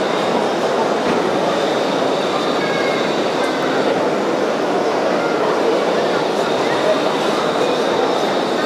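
Steady din of a busy exhibition hall: a continuous wash of many indistinct voices and general hall noise, with no single sound standing out.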